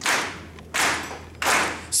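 Three slow hand claps, evenly spaced about three quarters of a second apart, each ringing out in the hall.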